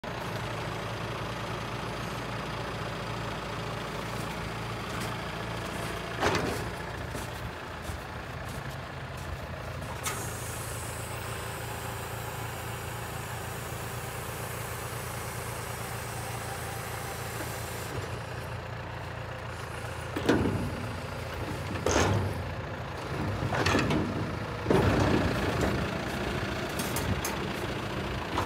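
Tractor engine running steadily at low revs. A sharp knock comes about six seconds in, and a run of louder clunks and bangs follows in the last third.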